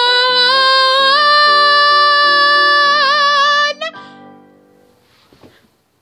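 A woman sings one long held final note over a backing track of chords. The note steps up in pitch twice and wavers near the end, then cuts off a little past halfway, and the accompaniment fades away to near quiet.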